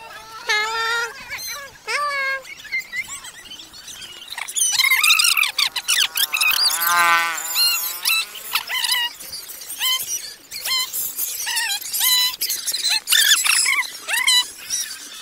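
Children's high voices calling out and squealing, many short shouts overlapping, sparse at first and busier from about four seconds in.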